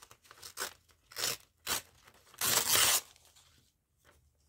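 Paper being torn by hand: a few short rips, then one longer, louder tear about two and a half seconds in.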